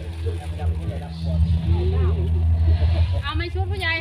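A steady, loud low hum runs under voices, and a voice rises clearly near the end.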